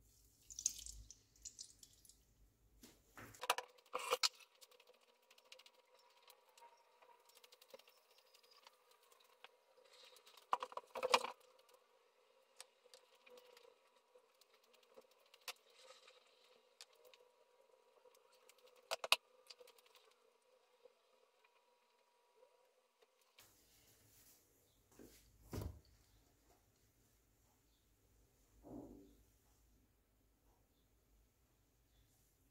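Quiet kitchen handling: a few sharp clinks and knocks from a drinking glass and a non-stick frying pan on a glass-ceramic hob, spaced out with long quiet gaps. A faint steady tone underneath stops about two-thirds of the way through.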